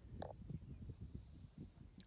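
A faint, steady, high-pitched insect trill, typical of crickets, with gusts of wind rumbling on the microphone and one brief click just after the start.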